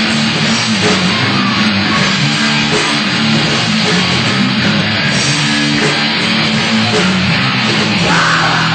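Heavy metal band playing live: an electric guitar riff over the full band, with no vocals in this passage.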